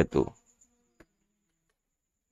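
A man's spoken word trailing off at the start, then a single faint computer keyboard keystroke about a second in, with near silence around it.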